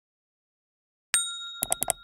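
Subscribe-button sound effect: a single bell ding about a second in, ringing on, then four quick clicks near the end.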